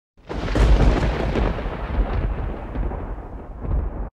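Thunder sound effect: a sudden crack that rolls into a deep, crackling rumble and slowly fades, then cuts off sharply at the end.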